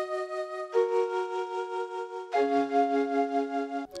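Flute chords from Output Arcade's Trill Flute preset: three held chords, changing about every second and a half, their level wobbling rapidly from an auto-pan effect.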